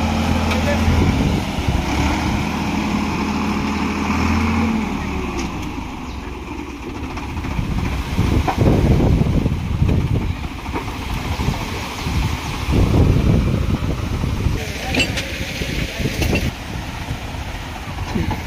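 Tractor engine running with a steady drone while the hydraulic tipping trolley rises; the drone drops away about five seconds in. Then the load of sand slides off the tipped trolley bed in rough, swelling rushes, with a few knocks.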